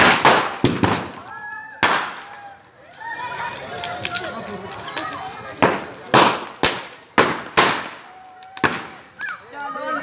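Firecrackers bursting in a burning Ravana effigy: about nine sharp bangs at irregular intervals, most of them coming quickly one after another in the second half, with people's voices talking and calling out between them.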